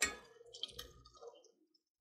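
Utensil stirring a thick stew in a stainless steel pot: a light click against the pot at the start, then a few faint soft ticks and wet stirring sounds.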